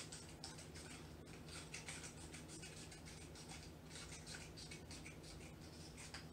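Scissors cutting a piece of paper, a run of faint, repeated snips.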